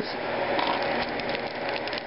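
Handling noise: a run of small clicks and rustles, thickest in the middle, as a hand sets down a small pin and reaches for a plastic-bagged pack of card sleeves.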